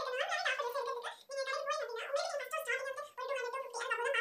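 A woman talking in a high, thin-sounding voice, pausing briefly about a second in and again about three seconds in.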